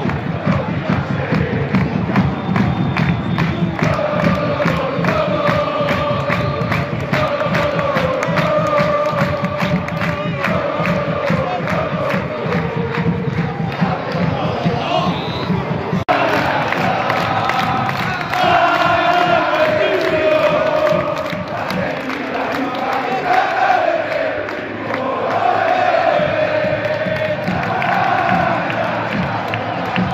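Stadium crowd of football ultras chanting a song together, with a steady beat of sharp strikes under the singing. About halfway through it cuts abruptly to a different sung chant without the beat.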